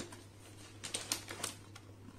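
A clear plastic sleeve crinkling and stiff 300 GSM watercolour paper sheets rustling as they are handled, in a few short crackles, most of them about a second in.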